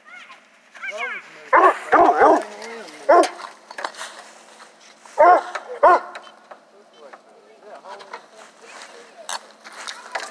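Hunting hounds barking: a string of loud, short barks in the first few seconds and two more near the six-second mark, then only faint sounds.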